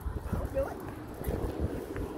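Footsteps of shoes on asphalt, a few dull steps, with a few short whimpering calls over them.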